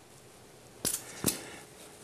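Two short sharp plastic clicks about 0.4 seconds apart, near the middle, as the white cap of a small seasoning bottle is worked open by hand.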